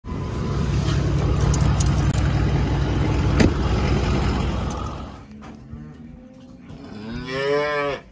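A loud low rumble with hiss for the first five seconds, with a sharp click about three and a half seconds in. Near the end a calf moos once, a call about a second long that rises and then falls in pitch.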